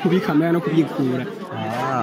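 Speech only: men talking into a handheld microphone, with chatter from other people behind.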